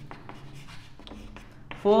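Chalk writing on a chalkboard: a run of short taps and scratches as letters are written, with a man's voice coming in near the end.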